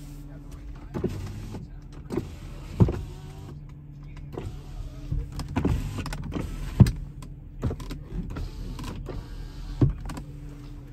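Porsche Cayenne's electric side window motor running as the glass lowers, over a steady low hum, with a few sharp clicks and knocks.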